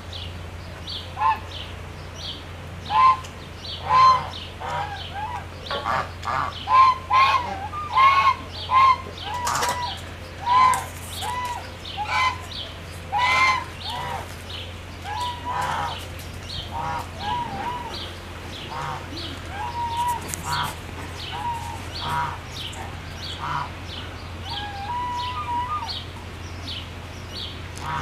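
Birds calling: a long run of short, repeated calls, busiest and loudest in the first half, over a steady low hum.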